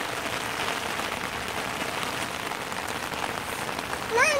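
Steady rain falling on wet concrete and grass, an even hiss with no breaks.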